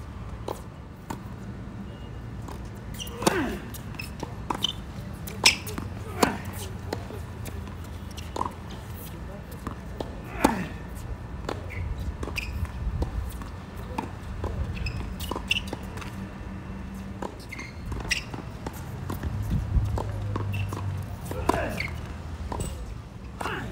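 Tennis rally on an outdoor hard court: racquet strikes and ball bounces, sharp irregular pops every second or few, the loudest about three to ten seconds in, over a steady low background with a few short squeaks.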